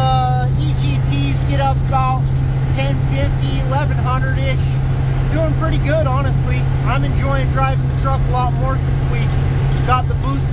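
Turbocharged truck engine running steadily at highway cruise, heard as a constant low drone inside the cab, with a voice that rises and falls over it.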